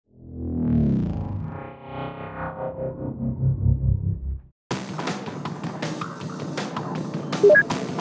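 A short, distorted, effects-laden musical intro sting opening with a falling glide, cutting off abruptly about four and a half seconds in. After a brief gap comes a steady hissing background bed with scattered clicks and two short electronic beeps near the end.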